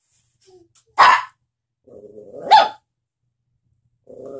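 Small puppy barking twice, two short sharp barks about a second and a half apart.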